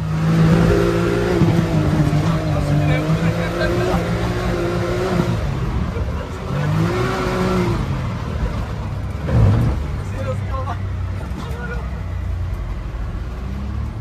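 Can-Am Maverick X3's Rotax 900 turbocharged three-cylinder engine running hard under load. Its pitch holds, dips about five seconds in, then climbs again as the throttle is reapplied. A brief loud knock comes about nine and a half seconds in.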